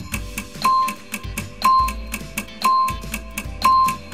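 Countdown-timer music: a steady tick about four times a second, with a short high beep on each second, over light backing music.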